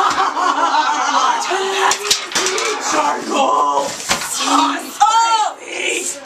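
Several people's voices talking and shouting over one another, with a few sharp knocks about two seconds in and high-pitched yells near the end.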